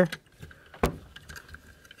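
A single sharp plastic click a little under a second in as a hinged arm panel on a plastic robot action figure is snapped open, with a few faint handling ticks around it.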